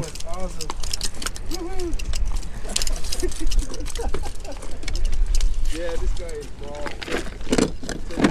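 Plastic tackle box handled and clicked open, with a cluster of sharp clatters near the end, over a steady low rumble of wind on the microphone and faint voices.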